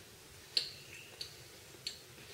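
Three faint, short crunches or clicks, evenly spaced: a bite of thin, crispy chocolate dessert pizza being chewed.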